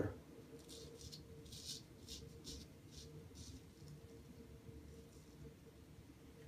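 Straight razor scraping through lathered stubble on the neck in a series of short, faint strokes.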